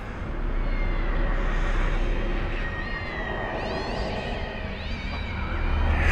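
Many feral cats meowing and yowling over a steady low rumble, with a sudden loud hit at the very end.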